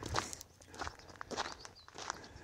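A person's footsteps at an even walking pace: about four soft steps.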